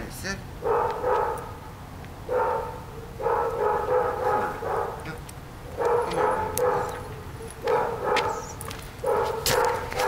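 Dogs barking in quick runs of several barks, six runs with short pauses between them.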